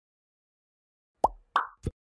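Three quick plop-like sound effects in a logo intro, starting a little over a second in and about a third of a second apart, the first and loudest dropping quickly in pitch.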